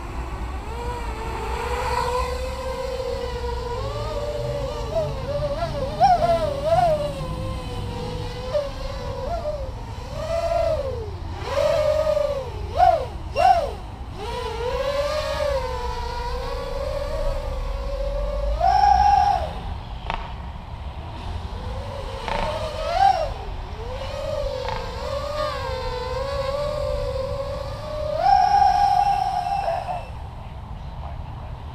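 Racing quadcopter's four KDE 2315 brushless motors spinning 5045 props, a steady whine that wavers in pitch as the throttle is worked in a hover. Several brief rises to high throttle come through the middle, and the longest full-throttle punch comes near the end as the quad climbs hard, drawing about 50 amps.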